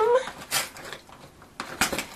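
A few short scratches and clicks of a small tool prying at the door of a cardboard advent calendar: one about half a second in and a couple near the end, after the tail of a spoken word.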